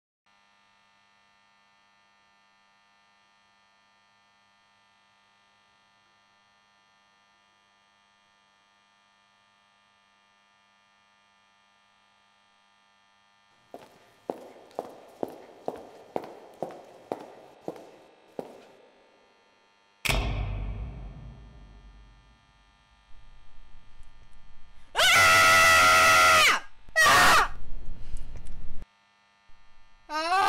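Film sound effects: a faint steady hum, then about ten evenly spaced knocks at roughly two a second, each fading. Next comes a single loud thunk whose deep rumble dies away over a few seconds, and near the end two loud, harsh electric buzzes, the first about a second and a half long.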